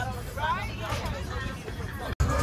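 Several people's voices chattering, with a steady low rumble underneath.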